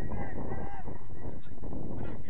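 Steady rumble of wind buffeting an outdoor microphone, with several short, arching calls rising and falling over it.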